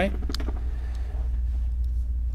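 A steady low hum running under a pause in a man's speech, with the end of his spoken "Right?" at the very start.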